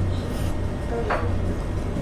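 A person slurping rice noodles off chopsticks and chewing a hot mouthful of pho, over a steady low hum.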